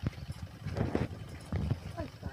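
A few irregular light knocks and clinks of a steel wire rope being handled and looped around a tractor's rear hitch, over a low rumble.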